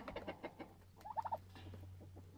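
Silkie chickens feeding from a plastic tub of seed and dried larvae: a cluster of quick pecking taps at the start, then a short, quick run of soft clucks a little past a second in.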